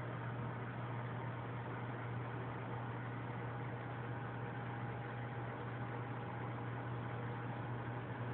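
Aquarium pump and aeration equipment running: a steady low hum with an even hiss of moving water and air over it.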